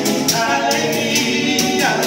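Men singing a vallenato paseo together, accompanied by two strummed acoustic guitars and a guacharaca scraped at about four strokes a second.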